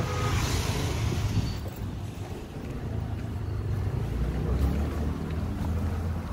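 Low, steady rumble of street traffic mixed with wind on the microphone, a little louder in the first second or two.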